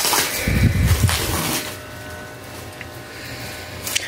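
Clear plastic packaging on a new pillow top crinkling and rustling as it is handled and opened, loudest in the first second and a half with a low thump about half a second in, then softer.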